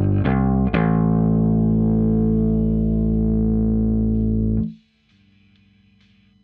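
Electric bass guitar playing a rock bass line: a few quick plucked notes, then a low note left to ring for about four seconds before it is cut off abruptly, leaving only a faint hum.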